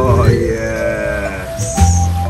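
A man's long, drawn-out excited exclamation, "Wohhh, yesss", its pitch rising and then gliding down, over background music with a steady bass.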